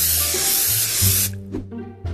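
Spray-paint can spraying in one long hiss that cuts off just over a second in, over an electronic music track with a steady bass line.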